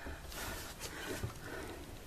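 Faint sounds of a wooden wardrobe door being swung open, over low room noise.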